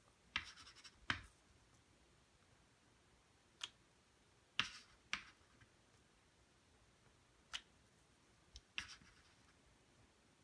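Plastic water bottle cap, wet with paint, stamped and pressed onto paper: about eight short taps spread through, some followed by a brief scrape.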